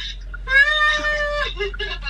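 A person's voice holding one high, level, drawn-out call for about a second in the middle, with brief snatches of talk around it.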